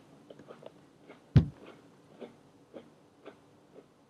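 Crunchy potato chips being chewed, a mouthful of three folded together: small irregular crackles, with one sharp, louder thud about a second and a half in.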